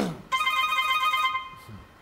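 A telephone ringing tone on the studio's call-in phone line: one steady electronic ring lasting about a second, then fading away.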